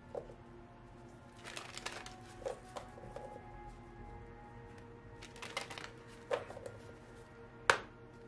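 Oracle card deck shuffled by hand: two flurries of card clicks and rustles, then a single sharp card snap near the end, the loudest sound. Soft background music plays underneath.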